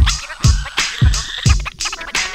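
Hip hop beat with turntable scratching over it: deep kick drums about every half second under crisp hi-hat hits.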